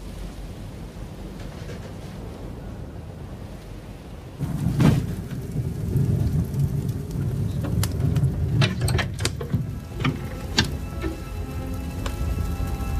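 A fire roaring in a firebox, with sharp crackles and pops. It comes in suddenly about four seconds in, after a low steady rumble.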